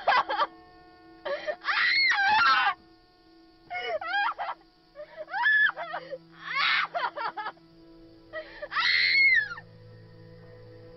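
A young woman wailing and sobbing in distress, about five anguished cries that rise and fall in pitch. Under them runs a held music drone, with lower notes joining near the end.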